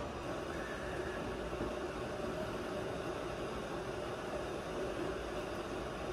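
A steady, even background hum with hiss, without distinct knocks or clicks.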